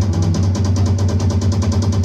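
Live band music: rapid, even drum strokes, about ten a second, over a held low bass note.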